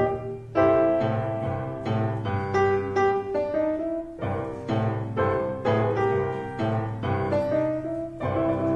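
Grand piano played solo: a boogie piece, with chords struck in the upper notes over a repeated low bass pattern.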